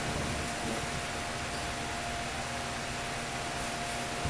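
Steady background hiss in a small room, with a faint constant hum tone running through it and no other events.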